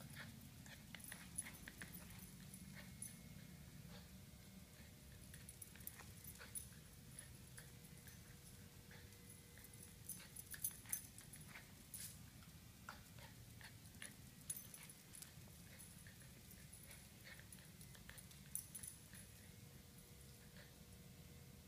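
Faint, scattered clicks and taps of a small terrier's claws on a bare concrete floor as it moves about searching, a few sharper taps around the middle and near the end, over a faint steady hum.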